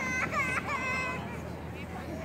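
A young child crying out in three short, high-pitched wails in the first second or so, over faint crowd and street noise.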